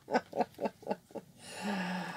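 A woman laughing in short rhythmic pulses, about four a second, that die away in the first second or so, followed near the end by a short breathy sound.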